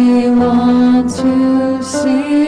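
A woman singing a slow worship song in long held notes, with sustained chords on a Kawai digital keyboard underneath.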